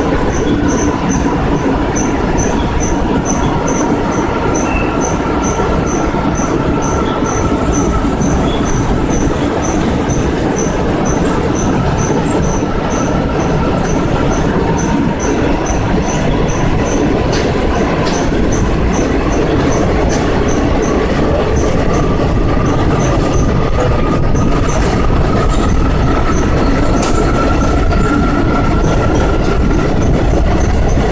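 Indian Railways express train running through a tunnel, heard from an open coach doorway: a loud, steady rumble of wheels on rail, closed in by the tunnel walls. Regular clicks come about twice a second, and a faint drawn-out wheel squeal slowly shifts in pitch.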